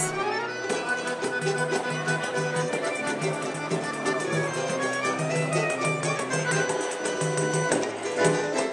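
Live samba de raiz band playing: cavaquinho and acoustic guitar strumming over pandeiro, with accordion holding long notes, in a steady, even rhythm.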